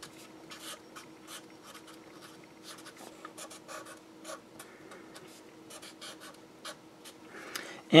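Marker pen writing on paper: a run of short, quick scratchy strokes, over a faint steady hum.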